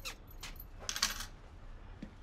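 Faint, light clicks and clinks of small hard objects: one at the start, then a small cluster about a second in.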